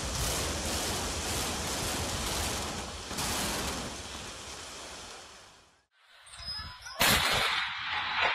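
Explosive demolition of a multi-storey building: a continuous rumble of the charges and the collapsing structure, swelling about three seconds in and then fading out. About seven seconds in a different loud, noisy sound begins suddenly.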